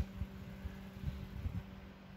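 Quiet room tone: a low steady hum with a faint low rumble underneath.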